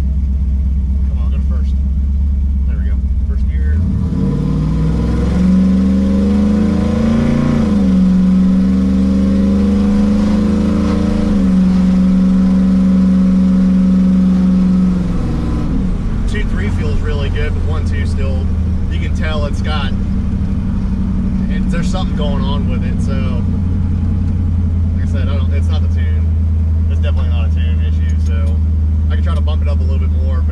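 Cammed LS 5.3 V8 in a pickup, heard from inside the cab as it accelerates. About four seconds in the revs climb quickly, hold high for about ten seconds with a couple of small dips, then drop back to a steady low cruise.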